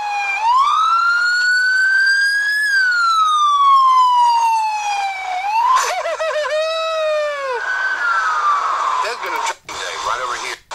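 An emergency vehicle's siren. It wails slowly up and down in pitch, switches for a couple of seconds to a rapid warble, then falls in one more wail.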